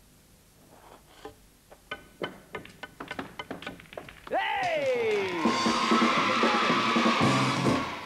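Snooker balls being struck and potted in quick succession: a run of sharp clicks that come faster and faster, from the cue and the balls knocking together and dropping into the pocket. About four seconds in, a much louder sound with a falling pitch over a wash of noise takes over.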